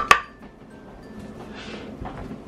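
Frozen berries tipped from a measuring cup and clinking into a glass blender jar. The last and loudest knock rings just after the start, then it goes quiet.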